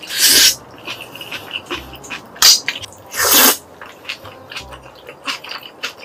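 A person slurping black bean noodles (jjajangmyeon): two long loud slurps, one just after the start and one about three seconds in, with wet chewing and lip-smacking clicks between and a sharp smack about two and a half seconds in.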